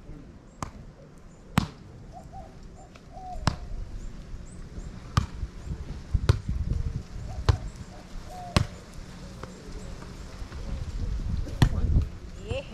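A volleyball knocked back and forth in a beach rally: about eight sharp smacks of hands and forearms on the ball, a second or two apart, over a low rumble.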